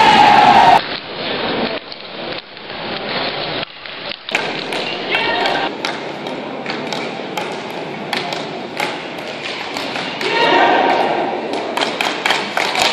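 Ball hockey stick and ball clicking and knocking on a hard sport-tile floor as a player stickhandles up the rink, over the hubbub of spectators' voices in a hall. The crowd voices swell near the end.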